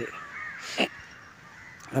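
A single short bird call about three-quarters of a second in, over faint outdoor background.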